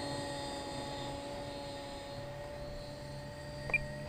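Thunder Tiger Raptor E700 electric RC helicopter descending in autorotation with its motor cut, its spinning rotor blades giving a faint, steady whir of several held tones. A short click comes near the end.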